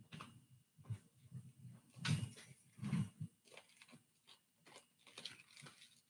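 Faint, irregular bumps and rustles of a headset microphone being handled, the strongest a few knocks about two and three seconds in.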